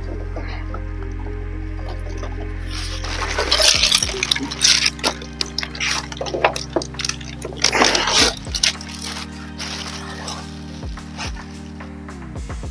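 A thin plastic bag and foam packing peanuts rustling and crackling as a bagged PC case is lifted out of a packed crate, loudest from about three to eight seconds in, then lighter rustling. Background music with steady low chords runs underneath.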